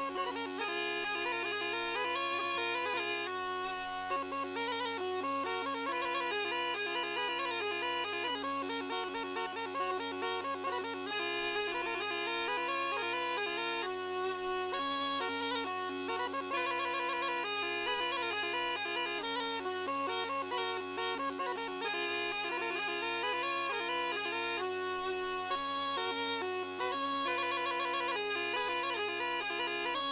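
Sardinian folk tune played on diatonic button accordions (organetti): a fast, ornamented melody over a steady held bass drone.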